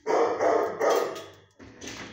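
A dog barking in a quick run of barks, loudest in the first second, with a softer bark near the end.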